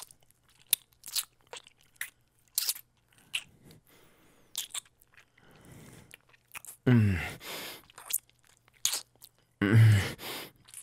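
Close-mic wet mouth sounds: a string of short, irregular smacks and clicks of kissing and licking. A breath comes about five and a half seconds in, and a low laugh follows near seven seconds.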